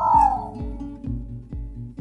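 Coding Critters dinosaur toy robot playing its nap-time sound: a short falling tone in the first half-second. Background guitar music with a steady beat plays throughout.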